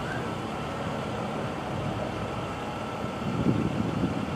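Steady outdoor background noise with a low vehicle-like hum, with a few faint voice-like sounds near the end.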